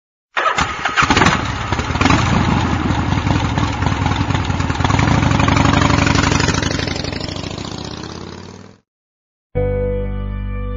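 Harley-Davidson motorcycle engine sound effect: the engine starts and then runs with a fast pulsing beat, fading out over the last couple of seconds. After a brief silence, music begins just at the end.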